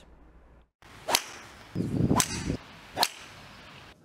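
Golf balls struck by clubs: three sharp cracks about a second apart, over a steady hiss.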